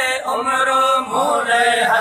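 Men's voices singing a Sindhi naat, a devotional chant without instruments, with long held notes that glide between pitches.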